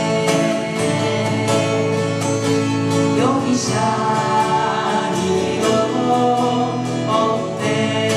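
A man and a woman singing a Japanese folk song together over two acoustic guitars, with a brief upward vocal slide about three seconds in.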